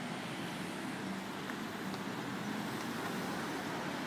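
Steady city street traffic noise, an even rumble and hiss with no distinct events.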